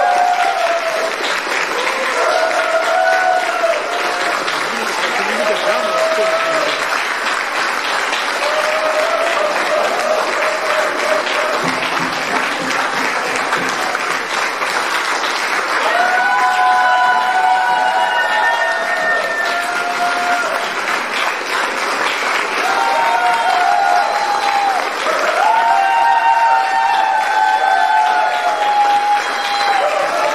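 A large audience applauding, with voices calling out over the clapping; the calls come more often from about halfway through.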